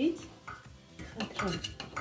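A metal knife scraping and knocking against the side of an aluminium pot in a few short strokes, as it is worked down between the pot wall and a baked sponge cake to loosen the cake.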